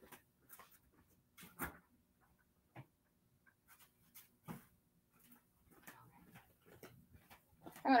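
A mostly quiet room with a few faint, scattered clicks and knocks of things being picked up and handled.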